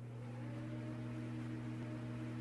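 Electronic drone from a channel logo animation: a steady low hum with a few held tones above it and a faint tone slowly rising.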